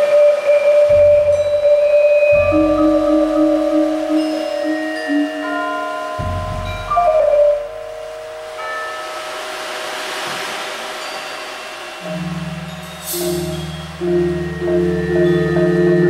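Marimba with a mallet-percussion ensemble playing a slow passage of long held notes over deep bass notes. A soft swell of noise rises about two-thirds of the way in, followed by a bright shimmering stroke.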